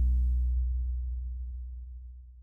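Electric bass guitar (Lakland) letting its last low note ring out and die away. The higher parts of the music drop away about half a second in, leaving only the low note, which keeps fading.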